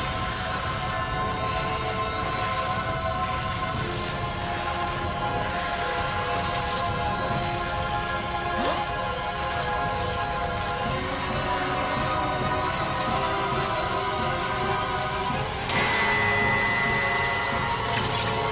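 Dramatic film score with long held chords over a steady low rushing rumble from a magic-beam sound effect. The music swells suddenly louder about two seconds before the end.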